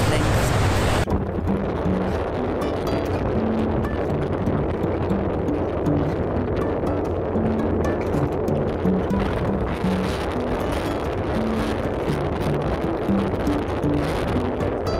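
Wind buffeting the microphone with background music under it. About a second in, a louder rush of wind and wake water cuts off.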